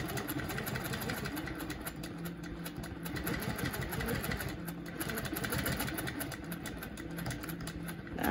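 Quilting machine running steadily and stitching, a level motor hum under fast, even needle strokes, set in cruise mode at a slow speed.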